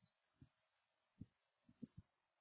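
Near silence, broken by three or four faint, short low thumps.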